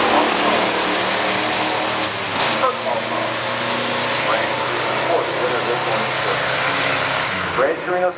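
Two V8 muscle cars, a 1972 Ford Gran Torino Sport and a 1962 Chevrolet Corvette, at full throttle side by side in a drag race, running hard down the strip and pulling away. The engine noise eases near the end as the cars reach the finish.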